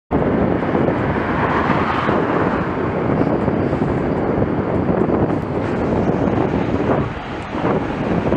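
Wind rushing over the microphone of a moving road-user's camera, mixed with road and tyre noise, steady apart from a brief lull about seven seconds in.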